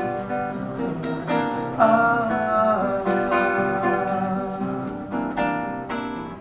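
Two nylon-string classical guitars playing together live, plucked notes and strummed chords in a Brazilian style. About two seconds in, a voice joins briefly with a wavering, wordless sung note.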